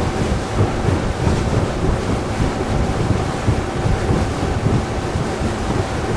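Wind buffeting the microphone and water rushing past the hull of a center-console boat running on plane, with a steady engine drone underneath.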